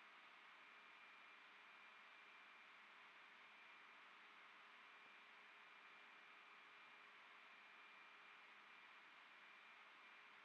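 Near silence: a faint steady hiss with a faint steady tone running under it.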